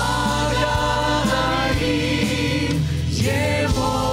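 A church choir with vocal soloists singing long held notes with vibrato over steady low accompaniment. A new phrase comes in with a rising pitch about three seconds in.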